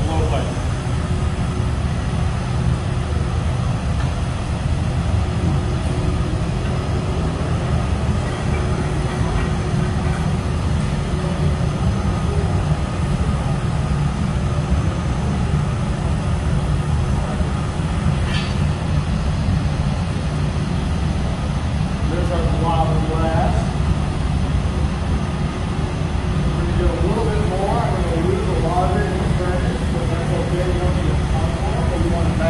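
Steady low roar of a hot-glass studio's gas-fired furnace, with a large floor fan running, unchanging throughout as glass is gathered from the open furnace; faint voices come in near the end.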